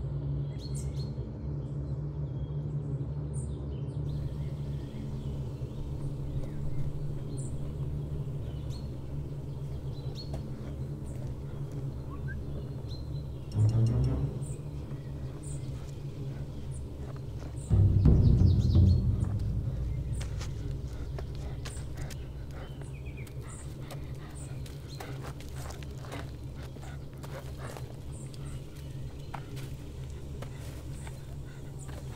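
A steady low drone of suspense film score with birds chirping high above it. Two sudden low hits break in, about 13 seconds in and again about 18 seconds in; the second is the loudest and fades away over a couple of seconds.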